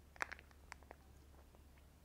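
Faint lip smacks and small crinkly clicks as syrup is squeezed from a small pouch and sucked into the mouth, several in the first second, over a low steady hum.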